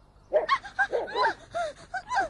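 A dog barking, a quick run of about seven sharp barks starting a moment in.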